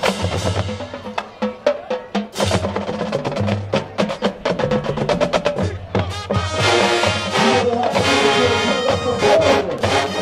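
Marching band percussion playing a fast, clicking rhythm with drum rolls. The full brass section comes in about six and a half seconds in and plays on over the drums.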